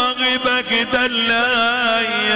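Middle Eastern music: a held melodic line with wavering, ornamented pitch over a steady low drone.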